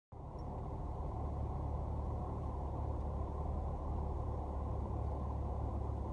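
Steady low hum of a car's engine idling, heard from inside the cabin.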